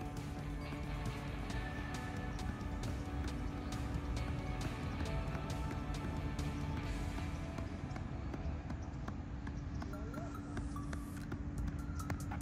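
A football being juggled with the feet: a steady run of light kicks, about three a second, under background music.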